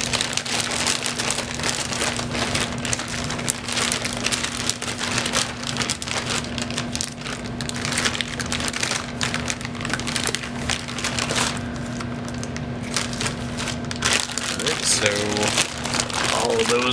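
Plastic packaging crinkling and rustling without a break as braided-sleeve modular power-supply cables are handled and packed away, with a steady low hum underneath.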